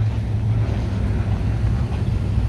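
Wind on the microphone: a steady low rumble with no distinct events.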